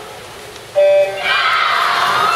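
Electronic starting beep of a swimming race: one short, loud, steady tone about three-quarters of a second in, signalling the start. Crowd cheering rises right after it and goes on loudly.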